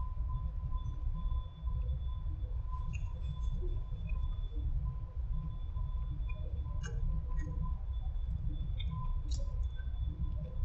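A man chewing a bite of crispy fried-chicken taco: faint crunches and mouth sounds over a steady low rumble and a faint high steady whine.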